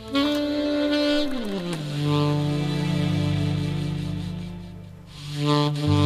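Saxophone playing a slow melody: a held note slides smoothly down into a long low note that fades out about five seconds in, then a new phrase begins near the end.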